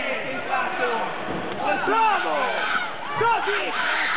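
Men's voices shouting in a large sports hall, over a steady background of crowd noise.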